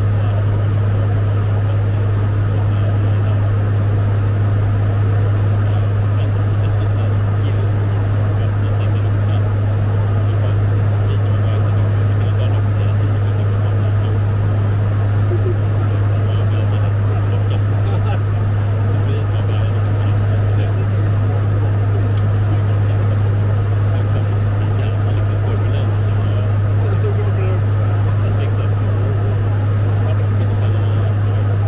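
Fokker 50 turboprop in cruise, heard on the flight deck: its PW100-series engines and six-blade propellers make one steady, loud low drone over a constant rush of air.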